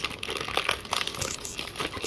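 Plastic Oreo cookie wrapper crinkling in a rapid, irregular run of crackles as fingers pull at its crimped seal to open it.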